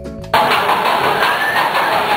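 A brief end of light, marimba-like music, cut off abruptly a moment in by loud, dense outdoor noise with an engine-like rumble.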